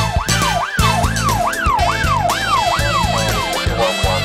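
Police siren wailing, sweeping rapidly up and down about twice a second, over drum-driven theme music; the siren fades out near the end, leaving the music.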